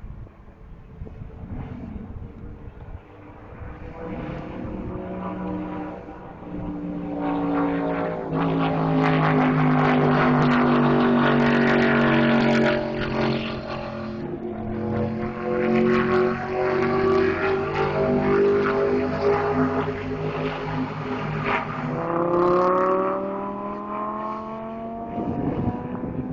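High-revving exotic sports car engines passing on a road course. The sound swells to its loudest about eight to thirteen seconds in, and near the end an engine climbs in pitch as it accelerates.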